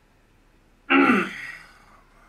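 A man clearing his throat once, a loud, short vocal noise about a second in.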